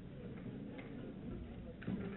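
Quiet pause in a recorded talk: faint tape hiss and room noise with a few faint scattered clicks.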